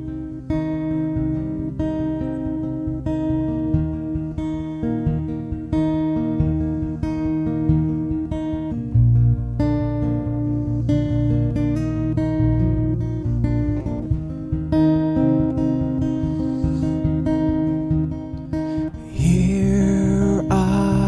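A guitar playing a song with plucked and strummed chords, growing louder just before the end.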